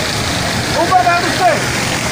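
Steady hiss of heavy rain and flowing floodwater, with a distant voice calling out once, rising and falling in pitch, about a second in.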